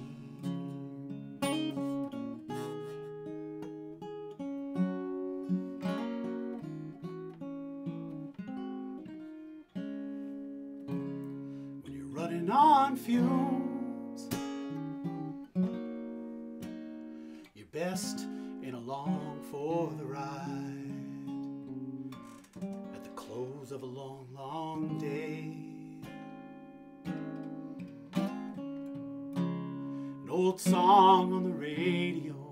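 Acoustic guitar playing an instrumental passage of a slow funeral song, chords struck about once a second.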